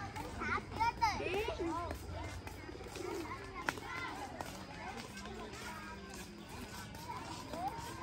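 Young children's voices: high-pitched squeals and chatter, loudest in the first two seconds, over steady outdoor background noise.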